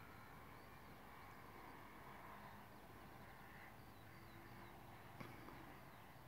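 Near silence: faint outdoor ambience with distant birds chirping and a single soft click about five seconds in.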